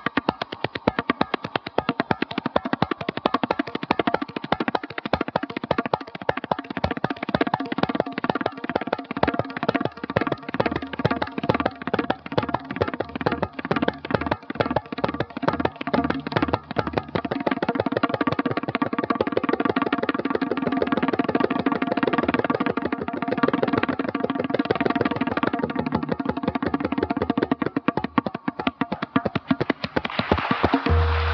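Tabla played solo at speed: rapid hand strokes on the dayan and bayan throughout. The strokes run together into a dense, nearly continuous roll in the second half, then a few more separate strokes come near the end as the piece closes.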